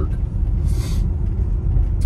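Steady low rumble of a car's engine and tyres heard from inside the cabin while driving, with one short hiss just under a second in.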